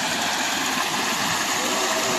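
Steady rush of a rocky mountain river, water pouring over a small waterfall and flowing around stones.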